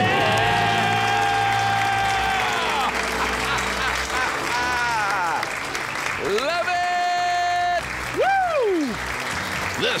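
Studio applause with long drawn-out cheering whoops over music: the celebration after a debt-free scream. One held whoop lasts almost three seconds at the start, another comes about six and a half seconds in, and a quick rising-and-falling whoop follows near the end.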